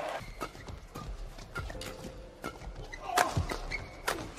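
Badminton rally: rackets striking the shuttlecock and players' feet on the court, sharp knocks coming a fraction of a second apart, the loudest near the end.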